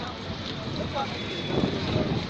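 Steady vehicle noise from road traffic, swelling near the end, with people's voices mixed in.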